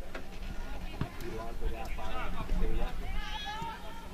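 Faint, distant voices calling out and talking, with a few short sharp knocks near the start and about a second in.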